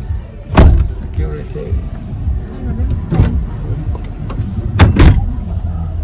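Car cabin sound: a steady low engine-and-road rumble with a few sharp knocks, one about half a second in, one about three seconds in, and the loudest two in quick succession near the end.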